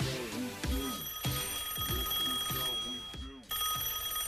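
A telephone ringing over music with a steady beat; the ring starts about a second in, stops briefly near the end and rings again.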